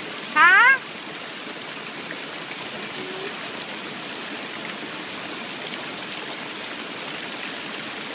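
Steady rushing of running water. About half a second in there is one short, rising vocal sound from a child.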